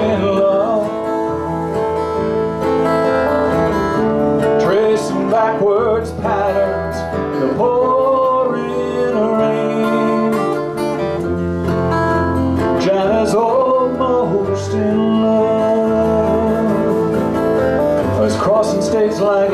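Live acoustic band playing an instrumental break: a flute carries the melody over strummed acoustic guitars and electric bass.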